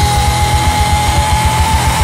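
Punk rock recording: a fast, driving drum beat with distorted band playing under one long held high note.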